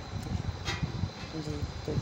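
Low, steady rumble of a gas stove burner under a steel pot of water just coming to the boil, with one light metallic click from the pot's lid less than a second in. A few words of speech come near the end.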